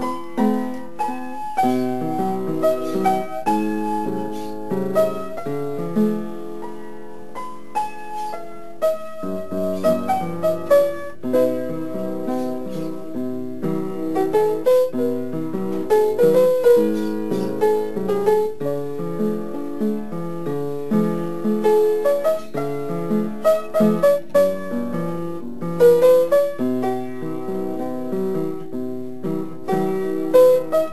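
Piano music: a melody played over held chords and low bass notes.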